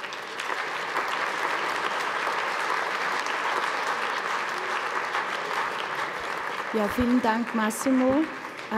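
Audience applauding steadily for several seconds, the clapping thinning out near the end.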